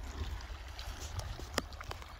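Wind on the microphone and water lapping against a kayak on open water, with a few faint clicks, the clearest about one and a half seconds in.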